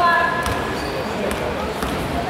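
A basketball bouncing on a hardwood gym floor, three knocks about half a second, then a second and a half, then nearly two seconds in, coming closer together. Voices ring out in the large hall.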